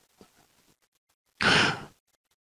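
A man's single audible breath at a close microphone, a rush of air about half a second long near the end, after near silence.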